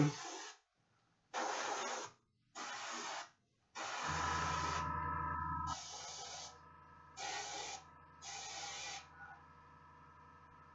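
Airbrush hissing in seven short bursts of spray, the longest about four seconds in, as a red glaze is built up in light passes on a miniature. A low hum comes in with the long burst and carries on more quietly after it.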